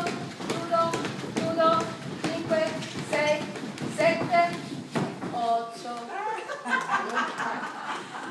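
Voices chanting held notes over hand claps that keep an even beat of about two a second. About five seconds in, the chant and claps stop and give way to talking.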